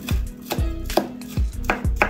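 Chef's knife dicing a red onion on a wooden cutting board: about six sharp chops, unevenly spaced, each knocking the blade against the wood.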